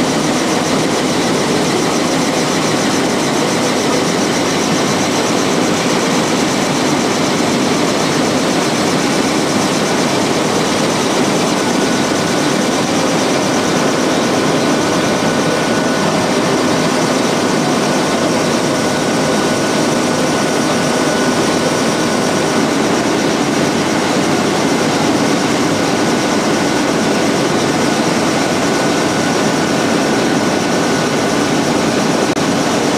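Strecker paper sheeter running: a steady, loud mechanical din from the machine's rollers and drives. A faint high whine joins about twelve seconds in.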